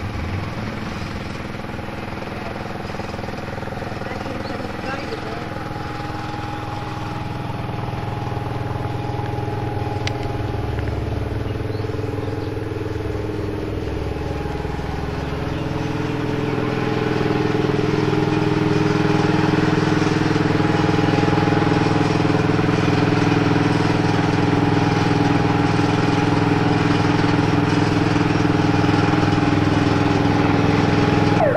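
A fire truck's engine running steadily, growing louder from about halfway through as the truck comes closer.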